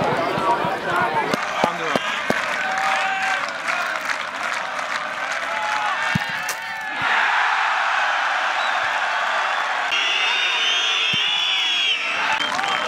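Football crowd in a stadium stand, many voices shouting over one another. About seven seconds in it changes abruptly to a steady roar of cheering and applause, with a high wavering whistling tone over it in the last two seconds.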